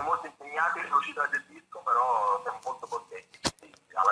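Speech only: a voice talking in short phrases, thin as if heard over a telephone line, with one short click near the end.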